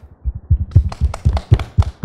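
Hands clapping right beside a handheld microphone: a quick, uneven run of claps, each landing as a heavy thud.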